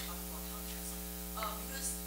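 Steady electrical mains hum from the recording or PA system, with a few faint, indistinct sounds in the second half.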